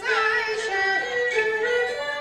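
Peking opera aria in siping diao sung in a high voice, notes held and gliding from one pitch to the next, over the opera band's accompaniment.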